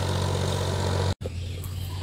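A tractor engine running steadily at a distance, a low, even hum. It breaks off abruptly just over a second in, leaving only faint background noise.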